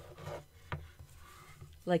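A sheet of watercolour paper taped to a board being slid and turned by hand on a tabletop: a soft rubbing with one light click just under a second in.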